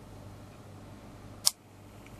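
A single sharp click about one and a half seconds in, over a faint steady low hum: the switch-over as the incubator's thermostat controller reverses the polarity to the small two-wire DC tray-turning motor, so that the motor starts the other way.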